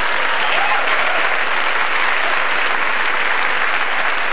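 Theatre audience applauding steadily, with some laughter mixed in, in response to a stand-up comedy punchline.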